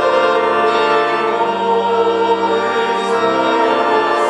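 Church organ playing sustained hymn chords, with voices singing along.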